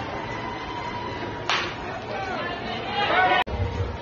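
A sharp smack about a second and a half in, a pitched baseball popping into the catcher's mitt, followed by voices calling out from the field and stands. The sound cuts out for an instant just before the end.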